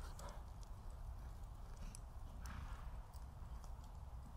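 Faint hoofbeats of a quarter horse moving past on soft arena dirt, irregular rather than crisp, over a steady low rumble.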